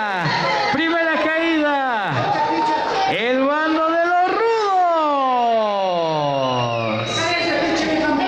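A man's voice calling out in long, drawn-out tones that swoop up and down, ending in one long falling call; it is the announcer proclaiming the winners of the fall.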